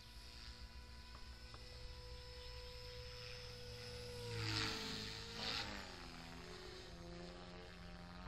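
Radio-controlled model helicopter flying, its motor and rotor giving a steady whine that sags and wavers in pitch as it manoeuvres. About halfway through come two loud rotor whooshes a second apart as it passes close.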